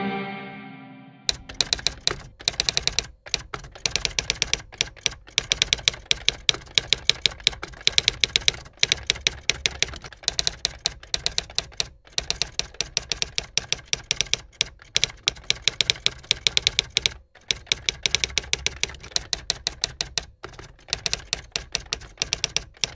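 Typewriter keys clacking in a rapid, uneven run of keystrokes with a few short pauses, in step with text being typed onto the screen. A music chord dies away in the first second before the typing starts.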